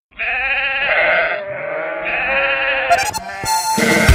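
Livestock bleating as the song's intro: two long, wavering bleats, then a norteño band with bass and accordion comes in just at the end.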